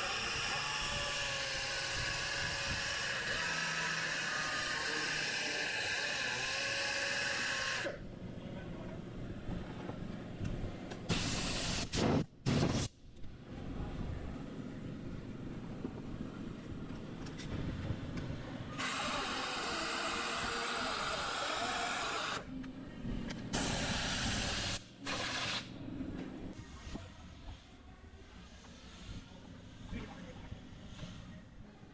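Pneumatic die grinder running steadily as it grinds a groove along a crack in a polypropylene bumper cover, then stopping after about eight seconds. It runs again in shorter stretches with pauses in between.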